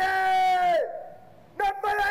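A parade commander shouting drill words of command: one long, drawn-out call whose pitch drops away at the end, then two short, clipped shouts near the end.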